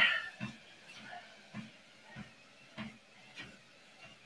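Footsteps on a Lifepro Swift treadmill's moving belt at an easy walking pace, one short, low knock about every 0.6 seconds.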